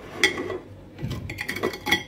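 A utensil clinking and scraping against a baking dish while a cake stuck to it is pried loose, with a light knock about a quarter second in and a few more in the second half.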